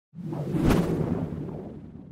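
Logo sting sound effect: a whoosh swells into a deep hit just under a second in, then fades away.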